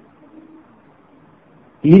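A man's lecturing voice pauses, leaving only faint background noise with a brief faint low tone, then resumes speaking near the end.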